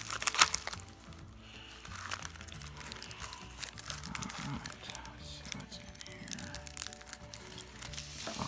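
Paper packaging crinkling and tearing as it is cut open and pulled apart, loudest in the first half second, over quiet background music.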